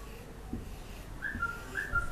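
Marker writing on a whiteboard: faint taps of the tip, then two short, high-pitched squeaks in the second half as the marker draws.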